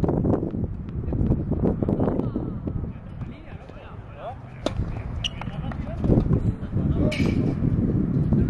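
Indistinct voices over a steady low rumble, with a single sharp crack about halfway through as a tennis racket strikes the ball on a serve.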